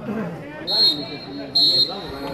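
Referee's whistle, two short blasts about a second apart: the full-time signal ending a football match. Voices chatter underneath.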